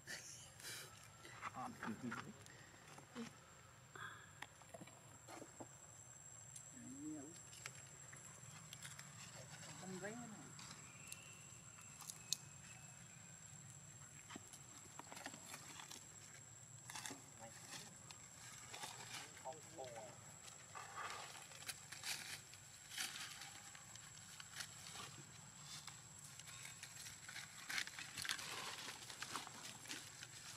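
Quiet stretch of faint voices and a few short animal calls that bend in pitch, with scattered clicks and knocks.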